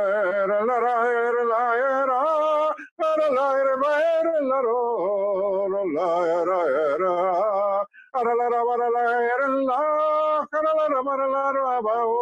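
A man singing unaccompanied in long, wavering held notes with no recognisable words. He breaks briefly for breath about three, eight and ten and a half seconds in.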